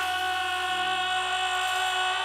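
A woman singer holds one long, steady high note into a stage microphone after sliding up into it, over a low sustained backing chord from the band.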